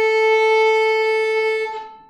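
Violin's open A string sounded with one long down bow: a single steady note that fades near the end as the stroke finishes, the string ringing on briefly.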